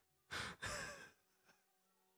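A man's breathy sigh after laughing: two short exhaled puffs about a third of a second in, over in under a second.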